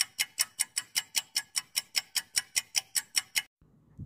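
Countdown timer sound effect: rapid, evenly spaced clock-like ticks, about five a second, stopping about three and a half seconds in.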